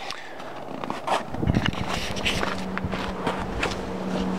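Scuffing, knocks and clicks of someone moving about inside a minivan, with a cluster of thumps about one and a half seconds in. A steady low hum comes in at the same time and keeps on.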